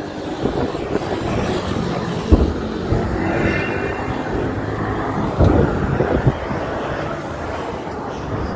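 Distant artillery shelling picked up on a phone microphone: a steady low rumble, with a sharp thump a little over two seconds in and a louder cluster of booms around five and a half to six seconds.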